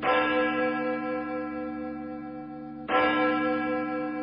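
A large bell tolling: struck twice about three seconds apart, each stroke ringing on and slowly fading.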